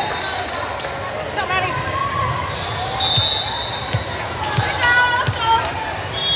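A volleyball bounced on a hardwood gym floor three times, about 0.7 s apart, in the second half, with short high sneaker squeaks and crowd chatter echoing in the large hall.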